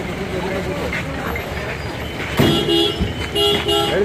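A vehicle horn honks twice, each blast about half a second long, starting about two and a half seconds in, over the chatter of a crowd.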